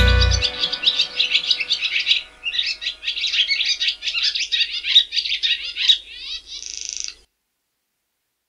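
The band's closing chord cuts off in the first half-second and a few faint ringing tones fade away. Birds chirp and twitter in quick, dense runs over it. A short buzzy trill comes near the end, then everything stops abruptly.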